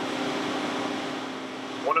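Steady hum and hiss of laboratory machinery, with one constant tone under it and no change in level.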